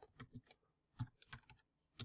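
Faint keystrokes on a computer keyboard: short, irregular clicks while code is typed, with a slightly louder one about a second in.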